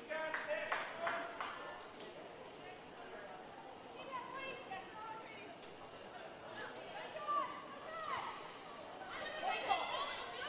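Faint, distant voices calling out at a football match during play, several people at once, a little louder near the end.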